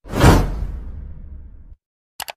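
A whoosh sound effect: a sudden swell of rushing noise that peaks almost at once, then a deep low tail that fades and cuts off shortly before the end.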